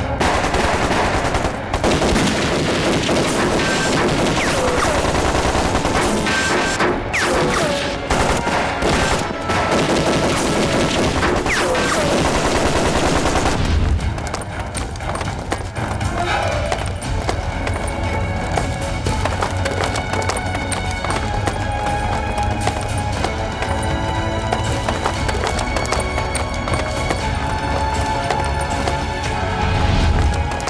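Rapid gunfire with automatic bursts and single shots, mixed with dramatic film score. About 14 seconds in the shots stop and the score carries on alone with a heavy low bass.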